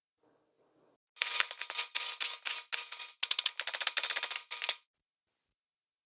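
Kitchen knife dicing a cucumber on a plastic cutting board: a quick run of sharp chopping knocks, with a short break in the middle, stopping a little before the end.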